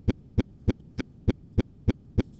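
Sharp clicks at an even pace of about three a second.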